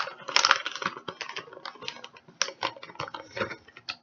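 Rapid, irregular clicking and scraping of shredded cheese being emptied from its package into a dish of macaroni, busiest at the start and thinning out toward the end.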